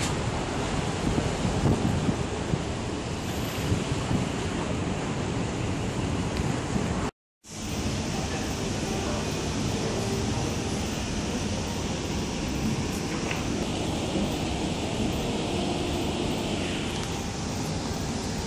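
Wind on the microphone over waterside ambience, steady and rough for about seven seconds. The sound then cuts out for a moment and gives way to the steady background hum of a café interior.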